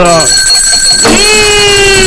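A steady high-pitched electronic tone, like an alarm. About a second in, a long drawn-out voice joins it, holding one note that slowly slides down in pitch.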